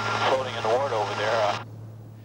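A man speaking over the steady noise of a helicopter in flight. Both cut off abruptly about one and a half seconds in, leaving only a low steady hum.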